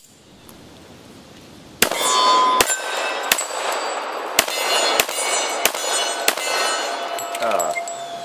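Colt 1911 (1918-pattern replica) .45 ACP pistol fired about seven times at a steady pace, starting about two seconds in. Between the shots, struck steel target plates ring.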